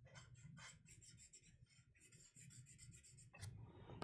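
Faint, quick, short strokes of a paper blending stump rubbing over charcoal on drawing paper, about five or six strokes a second, stopping a little after three seconds in, followed by a single click.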